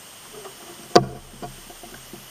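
A sharp knock about a second in, followed by a couple of lighter knocks.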